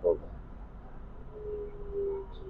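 MRT train car running, with a low steady rumble. About halfway in, a faint single-pitched whine sets in and slowly falls a little in pitch, of the kind the train's traction motors make.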